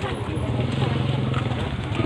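A vehicle engine running steadily with a low hum, with the chatter of a crowd of voices over it.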